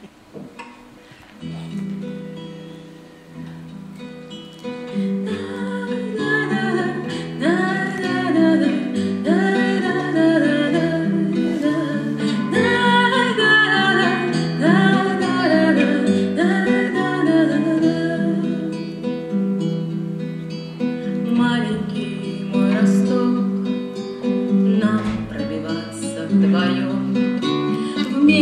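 Acoustic guitar playing the introduction to a lullaby, starting softly and growing fuller about five seconds in.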